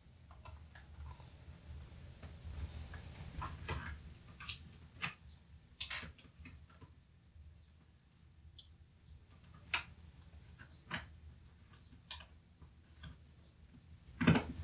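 Faint, scattered clicks and taps from fingers handling the small DC-in jack daughter board and the white plastic case of an opened clamshell iBook G3, about eight separate ticks spread over the time.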